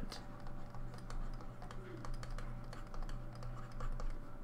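Stylus tapping and scratching on a tablet surface while words are handwritten: a quick, irregular run of light clicks over a faint steady electrical hum.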